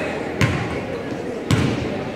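Basketball bounced twice on a hardwood gym floor, one bounce about half a second in and another about a second later, as a player dribbles before a free throw. Crowd chatter carries on underneath in the large gym.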